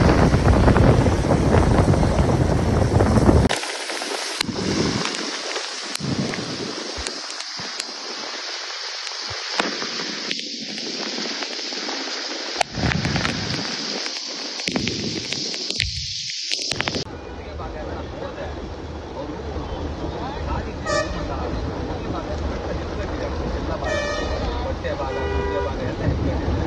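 Heavy rain and traffic heard from a moving vehicle, as a steady hiss of rain and tyres on a wet road. Wind buffets the microphone for the first few seconds. A vehicle horn toots briefly near the end.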